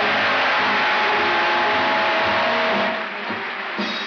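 Audience applauding loudly while a band plays. The applause thins about three seconds in, and the band music carries on.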